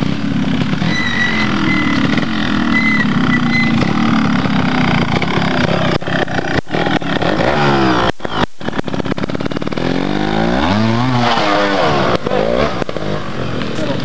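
Trials motorcycle engine running and being blipped as the rider works the section, its pitch sliding down early on and then rising and falling again in quick revs later, with a short break in the sound about eight seconds in.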